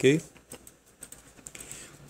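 A few faint, irregular clicks in a pause after a spoken "ok?".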